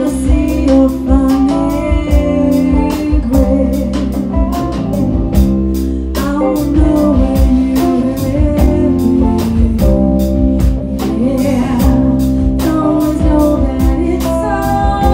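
Live band playing a song: a woman singing long held notes over electric and acoustic guitars, bass and a drum kit keeping a steady beat.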